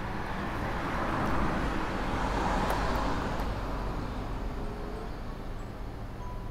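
Motor vehicle engine noise, swelling over the first few seconds and easing off again.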